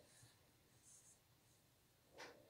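Near silence, with faint, soft scratchy rustling of yarn as a crochet hook is drawn through hairpin lace loops, once early and again about a second in.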